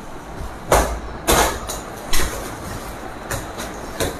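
Cloth rustling and hand-handling noise close to the phone's microphone as a headscarf is adjusted: four short scuffs over a low rumble.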